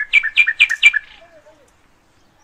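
A bird calling close by: a loud run of four quick repeated chirping notes in about the first second, followed by fainter sliding calls.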